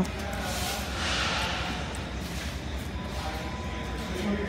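Steady low background hum with faint background music in a large indoor space.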